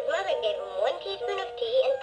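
Electronic music from the story-reading Peter Rabbit soft toy's speaker, a melody with gliding notes playing between spoken passages of the story.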